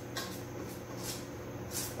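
Metal spoon stirring and scraping polvilho dough in a stainless steel bowl, a few soft scrapes against a steady low hum, the clearest near the end.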